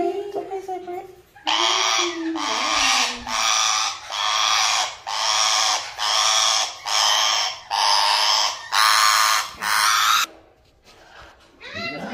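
Parrot screeching in protest while held in a towel for an injection: about ten harsh squawks in quick succession, starting a second and a half in and stopping a couple of seconds before the end.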